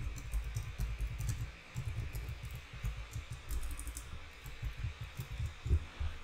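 Typing on a computer keyboard: an irregular run of key clicks with brief pauses.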